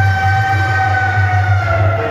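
Live stage-band music: one long held high note lasting nearly two seconds and ending near the end, over a steady low rumbling beat.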